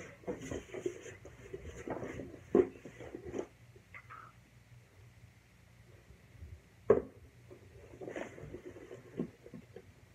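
Cardboard box and plastic slime container being handled on a tabletop: rustling and scraping with small knocks, and two sharp knocks, one about two and a half seconds in and a louder one about seven seconds in.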